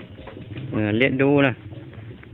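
A person's voice speaking briefly a little under a second in, over a low, steady background hum.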